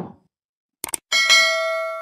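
Subscribe-button sound effect: two quick clicks, then a bright bell ding, struck twice close together and ringing out slowly.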